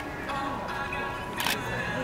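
Background music playing, with a single sharp camera-shutter click about one and a half seconds in.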